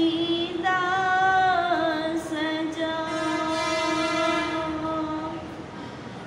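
A girl's unaccompanied voice chanting melodic Quran recitation (qirat): long held notes that glide down in pitch from one to the next, the phrase trailing off near the end.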